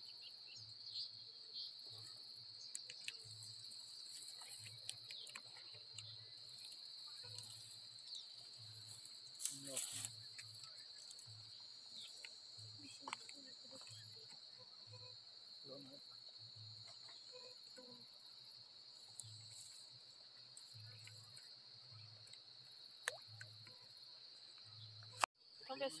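A steady high-pitched insect chorus, with faint scattered clicks over it.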